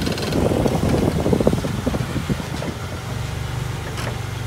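Pontiac Grand Prix GT's 3.8-litre V6 running at a low idle as the car creeps forward onto the trailer, with scattered clicks and crackles in the first few seconds.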